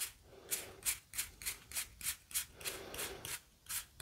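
Plastic game cards being thumbed off a deck one at a time, each sliding card giving a faint short flick, about three a second.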